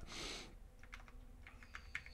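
Faint keystrokes on a computer keyboard: a quick run of key presses in the second half, typing a part number into a search box.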